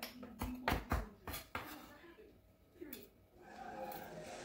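A knife chopping fresh cilantro on a plastic cutting board: about six quick, sharp knocks in the first second and a half, then a lull.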